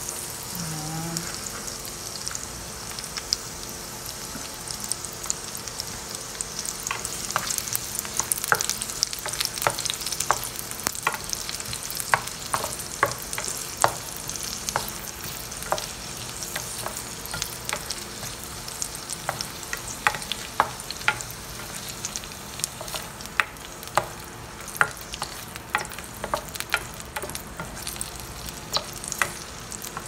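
Sliced onions sizzling in hot oil in a nonstick pan, with a steady hiss. From about seven seconds in, a spatula stirs them, clicking and scraping against the pan many times.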